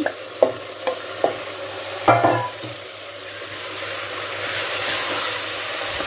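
Raw chicken pieces landing in hot oil and onion-masala in an aluminium pressure cooker pot, sizzling, with a few light knocks early and a louder brief knock about two seconds in. The sizzle swells and grows steadier through the second half.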